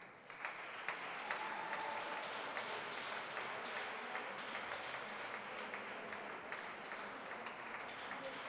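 Small audience applauding at the end of a roller-skating program, starting just after the music stops, with individual claps standing out over a steady patter.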